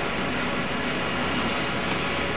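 Steady, even background hiss and hum of the room, with no speech.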